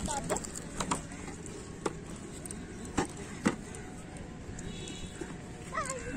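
Handling noise from a phone camera being carried while walking: a few sharp knocks and rubs scattered over steady outdoor background noise. A voice starts near the end.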